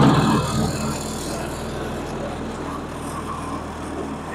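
1949 Case D tractor's four-cylinder engine running with the throttle opened, pulling the tractor along in third gear. It is loudest at first and eases to a steady note about a second in.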